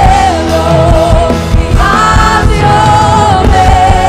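Live Christian worship band playing: a woman's lead vocal holds long, wavering sung notes over drums and keyboards, with a second, higher vocal line joining briefly about halfway through.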